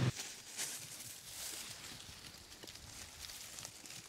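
Quiet woodland background with a few faint rustles and soft taps scattered through it. The quad's engine cuts off suddenly at the very start.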